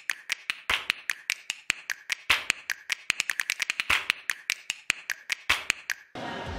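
A rapid, uneven run of sharp clicks, several a second, some noticeably louder than others.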